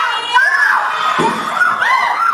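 Several young women's voices shouting and yelling over one another on stage, loud and overlapping throughout.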